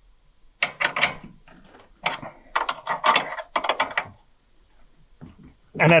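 A run of short metallic clicks and knocks in four quick clusters, from a loose bolt on a Ford Ranger's tray rack cover being worked by hand with an Allen key. The bolts have been shaken loose by corrugated roads. Under it all is a steady high-pitched insect chorus.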